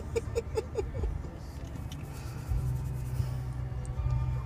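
A newborn baby's short squeaky grunts, about half a dozen in the first second, over the steady low hum of a car interior.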